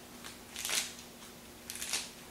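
Fresh lettuce leaves torn by hand: crisp ripping and crackling tears, a brief one near the start and then two longer ones about a second apart.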